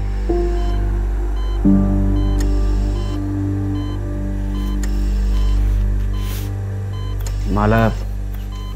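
Dramatic background music: a steady low drone with long held tones, one entering just after the start and a fuller one at about two seconds. Faint short high beeps recur through it.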